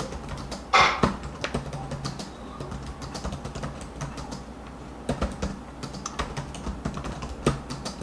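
Typing on a computer keyboard: irregular key clicks picked up by an open microphone on a video call, denser in the second half, with a brief louder rustle about a second in.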